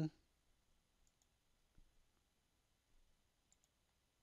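Near silence: room tone with a few faint computer mouse clicks, about a second in, near two seconds and twice more near the end.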